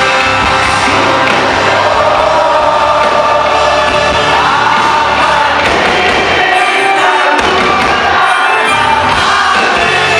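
A rock band playing live in a large hall, with singing and crowd noise, recorded loud from within the audience. The bass drops out briefly twice in the second half.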